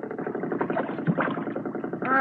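Motorboat engine sound effect, running steadily as another boat draws near.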